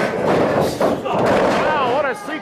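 Several sharp thuds of wrestlers' feet and bodies hitting the canvas of a wrestling ring, as a drop kick knocks one wrestler down to the mat.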